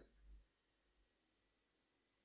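Faint background hiss with a thin, steady high-pitched electronic tone; no other sound.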